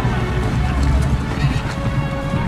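Film soundtrack played over a hall's speakers: horses whinnying and hooves clip-clopping, with orchestral music held underneath.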